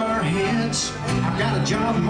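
Live country song: two acoustic guitars strummed together, with a man singing the lead line.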